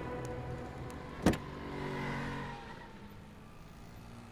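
A car door latch clicks open once, sharply, about a second in, and the door swings open. Soft background music fades beneath it.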